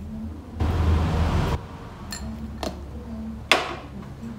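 Seasoning granules poured from a container onto chopped lemongrass and chilies in a wooden mortar: a rushing pour lasting about a second. Near the end comes one sharp clink of a container.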